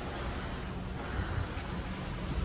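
Steady rushing wind noise with a low, uneven rumble, heard from the open balcony of a moving cruise ship.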